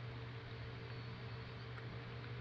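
Room tone: a steady low hum under an even background hiss, with no other sound.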